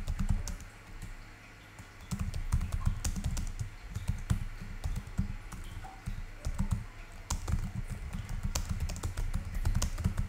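Typing on a computer keyboard: a few keystrokes, a short lull about a second in, then a steady run of rapid keystrokes.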